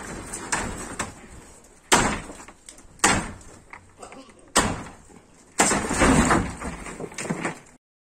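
Corrugated roofing sheets on a makeshift pole-and-sheet shelter banging and rattling as they are pulled down: several separate crashes about a second apart, then a longer clatter near the end.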